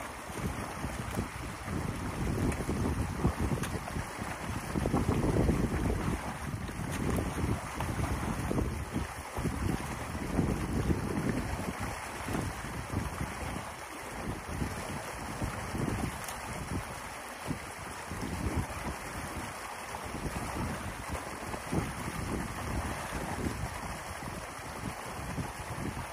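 Water rushing through an opening torn in a beaver dam, with wind buffeting the microphone in gusts, strongest in the first half.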